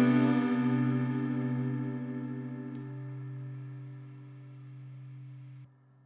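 A song's final guitar chord ringing out and slowly fading, wavering slightly as it dies away, then cutting off abruptly near the end.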